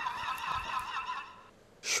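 A horse whinny sound effect. Its quavering tail fades out about a second and a half in.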